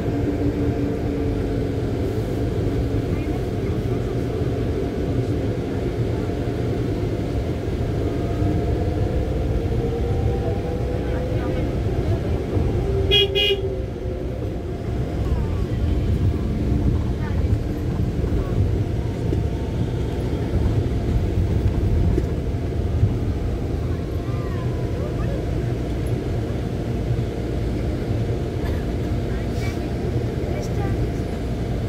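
Steady engine rumble and road noise of a moving vehicle heard from inside it, with one short horn toot about thirteen seconds in.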